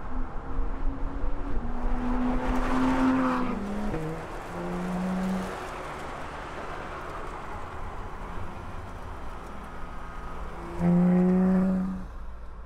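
Porsche 911 GT3 RS flat-six engine running hard on track. Its note holds high, then steps down in pitch a few seconds in and fades. Near the end it comes back suddenly loud at a steady pitch as the car passes.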